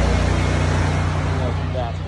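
Small gasoline engine of a pressure-washing rig running steadily, growing fainter as the camera moves away from it.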